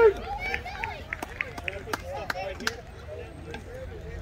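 A loud call right at the start, then overlapping voices of players and spectators chattering and calling out across a baseball field, with scattered sharp clicks.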